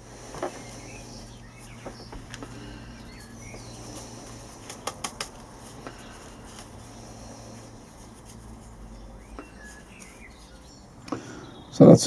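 Compost being scooped from a bucket into small plastic plant pots by gloved hands: soft rustling with a few light plastic clicks, a short run of them about five seconds in. Faint bird chirps in the background.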